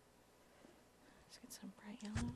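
Near silence: room tone, with faint whispered voice sounds starting near the end.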